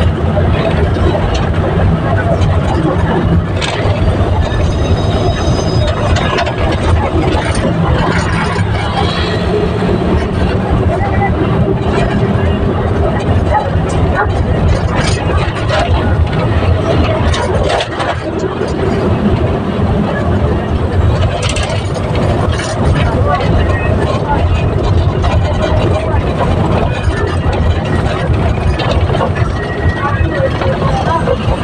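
Steady engine and road noise heard from inside a moving vehicle, with people talking over it.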